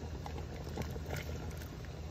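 Cut vegetables (okra, carrot, onion) tipped from a bowl into a pot of simmering broth: a few soft splashes and light knocks over a steady low rumble from the pot.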